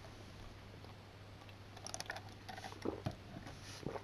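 Quiet handling of a plastic water bottle: a few faint clicks and soft knocks, most of them in the second half, over a low steady hum.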